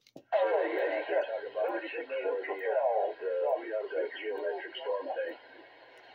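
Another station's voice received over a Galaxy DX 949 CB radio's speaker, thin and narrow-sounding with a steady hiss beneath it. The voice stops about five seconds in, leaving faint open-channel hiss.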